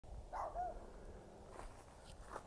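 A dog barking faintly and briefly, about half a second in.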